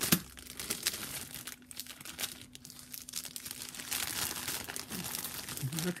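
Clear plastic bag crinkling and rustling as hands work it open and pull out the contents, with a sharp crackle at the start as the loudest moment.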